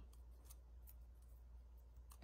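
Near silence, with a few faint small ticks and rustles of fingers handling and peeling a nail polish strip.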